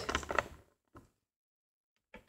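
Short scrapes and clicks of small plastic Littlest Pet Shop figures being handled on a hard glossy surface, then one faint tick about a second in; the rest is dead silence.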